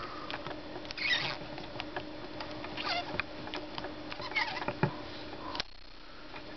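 Clockwork spring motor of a 1959 Bolex Paillard B-8SL 8mm movie camera being wound by hand: a run of small ratchet clicks, with three short louder winding strokes at about one, three and four and a half seconds in.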